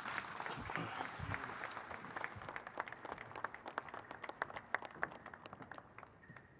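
Applause from a seated audience: dense clapping at first, thinning about halfway through to scattered single claps that die away near the end.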